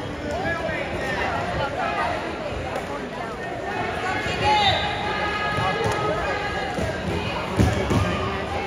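Spectators' voices and calls in a gym, over scattered low thuds; a sharper thud near the end is the loudest sound.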